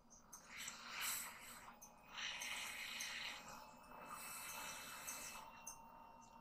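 A person's faint breathing near the microphone: a few soft, slow, noisy breaths, the fullest one about two seconds in.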